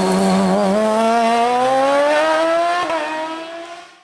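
Sports-prototype race car's engine under hard acceleration, its pitch climbing steadily, with a quick upshift about three seconds in. It then fades away quickly at the end.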